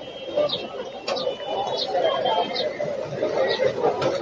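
Indistinct background chatter, with a small bird chirping five times in short high notes.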